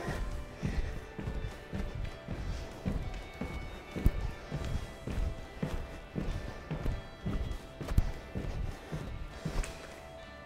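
Background music with a series of soft, regular thuds from sneakers landing on a wooden floor as a person hops in place; the landings stop shortly before the end.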